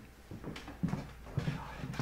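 Footsteps on a hard floor: a few low knocks about half a second apart, with rustle from a handheld camera being carried.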